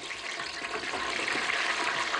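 Stuffed pigeon deep-frying in hot oil in an electric deep fryer basket: a steady, bubbling sizzle that grows louder as the oil boils up around it.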